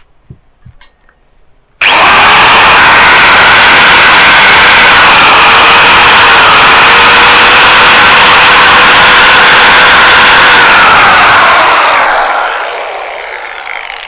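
A Makita GA5010 125 mm angle grinder is switched on about two seconds in and runs free with no load at its full 12,000 rpm. The motor and cooling fan make a loud, steady whine. Near the end it is switched off and spins down, fading away.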